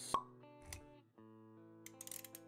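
Animated-intro music with held notes, punctuated by a sharp pop just after the start, the loudest sound here, and a short low thump a little later.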